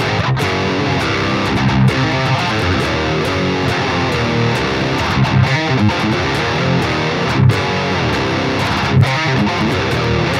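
An Ibanez AZ24P1QM electric guitar played through its Seymour Duncan Hyperion bridge humbucker and an amp plugin, riffing with low chugging notes and the occasional louder accent.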